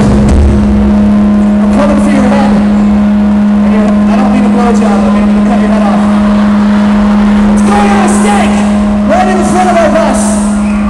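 Loud, distorted live pop-punk concert sound heard from within the crowd. A steady low drone runs underneath, with wavering voices over it.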